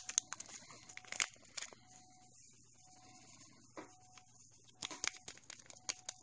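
Faint clicks and crinkling from a plastic glitter container being handled and tipped as 1 mm pink hexagon glitter is poured into a mixing bowl. The clicks come in the first second or so and again near the end, with a quieter stretch between.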